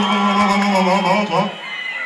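A voice holding one long, steady note that cuts off about a second and a half in, heard through a live club sound system.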